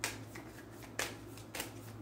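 A deck of tarot cards being shuffled by hand: several short, crisp flicks of the cards, the sharpest at the start and about a second in. A steady low hum runs underneath.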